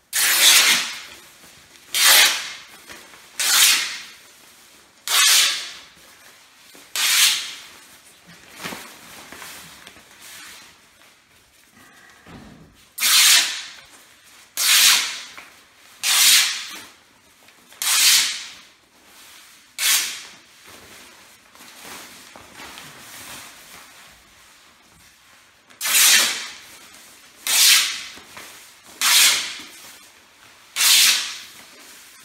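Nylon pneumatic cloth ripped by hand into strips along the length of the fabric: a sharp tearing rip lasting under a second, repeated every second and a half to two seconds. The rips come in three runs of about five, five and three, with quieter rustling of the sheet in the two pauses.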